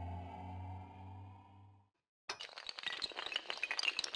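Logo-intro sound effects: a low droning hum with a slowly rising tone fades out, then after a brief silence a dense crackling, glass-shattering effect starts about two seconds in and keeps going.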